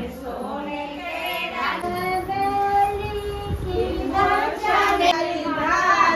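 Women singing a traditional haldi wedding song in high voices, holding one long note about halfway through.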